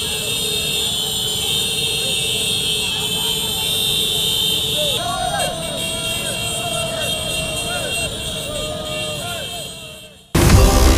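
A procession of many small motorcycles running together, with people in the crowd shouting and calling over the engines; the sound fades out near the end.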